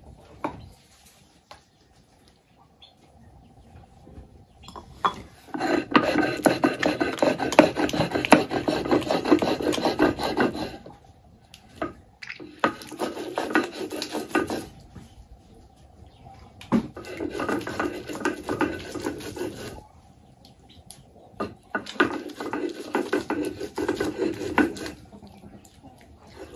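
Stone hand roller (metlapil) scraped back and forth over a volcanic-stone metate, grinding chipotle chiles into paste. The gritty scraping comes in four bouts with short pauses between them; the first and longest begins about five seconds in.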